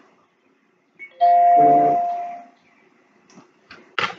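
Phone text-notification ding: one chime tone about a second in that rings out and fades over a little more than a second, followed by a few faint clicks.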